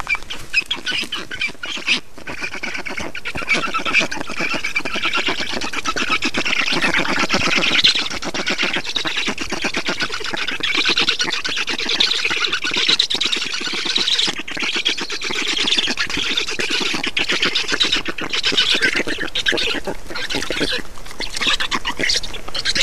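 A brood of black stork nestlings begging for food all together in a continuous, rapid raspy chatter while an adult feeds them at the nest.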